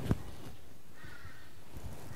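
Quiet room tone with a faint bird call about a second in.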